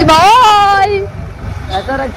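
A woman's drawn-out vocal exclamation, its pitch rising and then falling, lasting about a second. It sits over the low rumble of the moving motorcycle.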